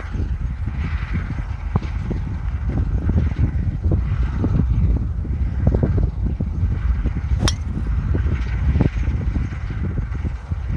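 Wind rumbling on the microphone, with one sharp crack of a driver striking a golf ball off the tee about three-quarters of the way through.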